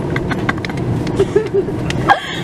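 Steady drone of an airliner cabin, the engine and airflow noise heard from inside the plane, with a few light clicks scattered through it.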